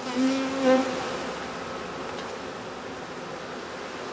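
Honeybees buzzing at their hives: near the start one bee passes close with a loud, steady buzz lasting under a second, then the softer, even hum of the colony carries on.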